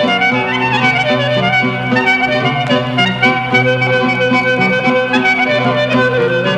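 Greek folk clarinet playing an ornamented tsamiko melody over steady accompanying notes, from a 1936 recording.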